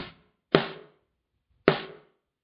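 Recorded snare drum track played back through a noise gate: three sharp hits, the first very brief, each cut off abruptly into silence as the gate shuts. The gate threshold has been raised to shut out the kick drum bleeding into the snare mic.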